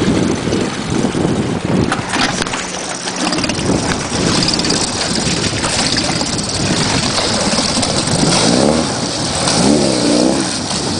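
Small four-stroke outboard motors running under way, with water rushing and splashing past the hull; the engine pitch wavers up and down near the end.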